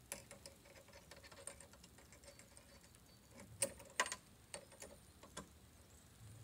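Light, irregular clicking and ticking of a metal boot luggage rack's clamp bracket being fitted and tightened onto a car's boot lid edge, with two sharper clicks about half a second apart a little past the middle.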